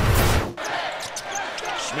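A sudden loud burst about half a second long ends the intro music. Then live game sound from a basketball arena follows: crowd noise, with the ball bouncing on the hardwood and brief knocks from play on the court.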